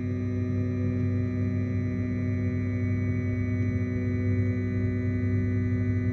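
Flashforge Dreamer NX build platform lowering on its stepper-driven Z axis along freshly greased guide rods: a steady motor hum and whine made of several even tones. The squeak is much reduced but not gone.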